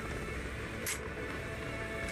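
Tense film score music with a steady low rumble beneath it, and a short sharp hiss about a second in.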